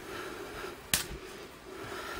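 A single sharp click a little under halfway through, over faint rustling, from handling the exit sign's housing.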